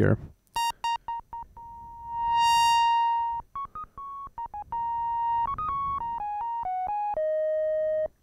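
Behringer DeepMind 12 analog synthesizer playing a single square-wave voice while its low-pass filter is being closed to soften it toward a flute tone. A few short notes come first, then a held note that swells brighter and louder and then mellows as the filter moves. A run of notes stepping mostly downward follows, ending on a lower held note that stops at the end.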